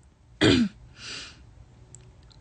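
A young woman clearing her throat once, a short loud burst about half a second in, followed by a softer breath out.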